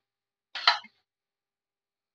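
A short throat noise from a person, lasting about a third of a second and starting about half a second in, otherwise near silence.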